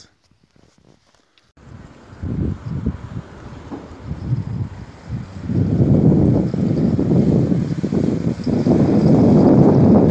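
Wind buffeting the microphone in irregular gusts, starting about a second and a half in and growing louder and more continuous from about halfway.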